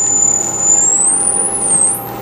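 Portable radio tuned between stations: loud static hiss with a thin high whistle that slides up in pitch and wavers from about a second in.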